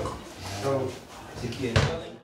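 Cardboard box being handled and opened, with one sharp knock near the end, over faint voices.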